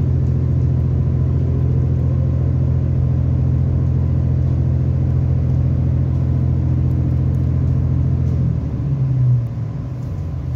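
Irish Rail 29000 class diesel multiple unit running, heard from inside the passenger saloon: a loud, steady low engine drone with rumble. Near the end the note shifts and the drone eases off.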